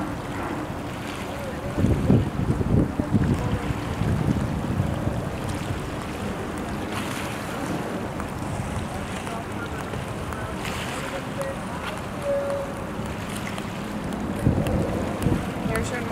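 Wind buffeting the microphone in gusts, strongest about two seconds in and again near the end, over a steady wash of water and a low steady hum from the passing cruise ship.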